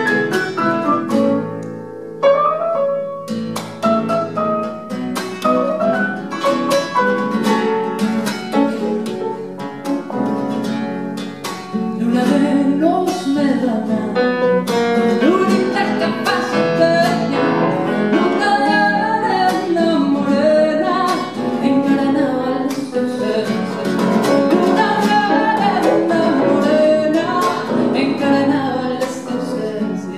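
Grand piano and classical guitar playing an Argentine zamba together, with a woman's voice singing over them from about twelve seconds in.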